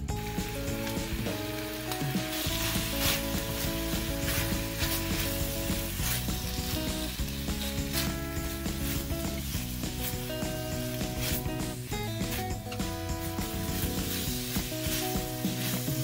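Garlic scapes and dried anchovies stir-frying in a sticky gochujang sauce in a wok, with a steady sizzle and repeated scrapes of a metal spatula and a wooden spoon turning them. Background music plays underneath.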